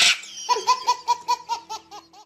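A brief rush of noise cuts off at the very start. Then comes a rapid run of high-pitched laughter, 'ha-ha-ha' syllables about six a second, each dipping in pitch, growing fainter toward the end.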